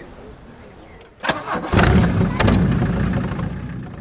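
A small tractor's engine starting about a second in, then running steadily.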